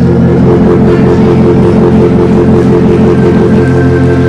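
Live church band playing between sung lines: sustained organ chords over bass, loud and steady, with the chord shifting near the end.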